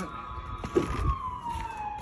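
Loud ambulance siren: one long wail gliding slowly down in pitch.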